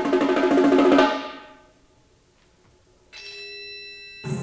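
Solo percussion playing a fast run of rapid pitched strokes that swells to a peak about a second in and then dies away. After a short pause, a single struck note rings on near the end.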